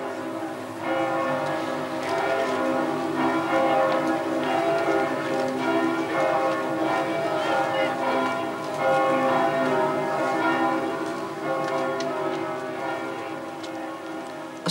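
Roskilde Cathedral's church bells ringing for a funeral: several bells sounding together, their long tones overlapping, filling in fully about a second in.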